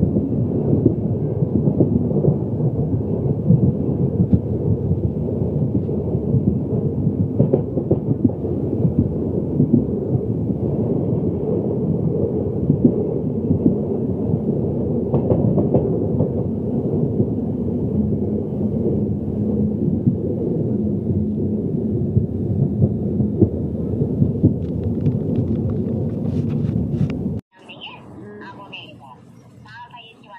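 Loud, steady low rumble of a passenger train running, heard from inside the coach at the window. It cuts off suddenly near the end.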